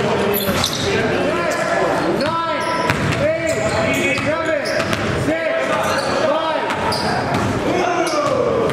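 Basketball bouncing on a gym floor during play, repeated knocks, under pitched voices.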